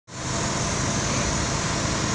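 A road-marking truck's engine running steadily, mixed with a constant rumble and hiss of street traffic.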